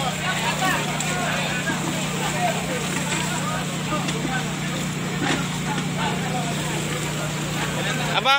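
Steady low drone of a fire pump engine driving the hose lines, with many people talking and calling out over it.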